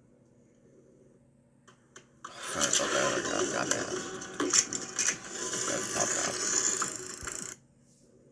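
Mechanical clattering and rattling of a pulley-and-string contraption, with many sharp clicks over a steady hiss, starting about two seconds in and cutting off abruptly near the end.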